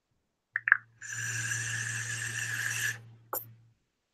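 A draw on a vape: about two seconds of steady airy hiss with a faint whistle, air being pulled through the atomizer's airflow, after two short clicks. A single click follows near the end.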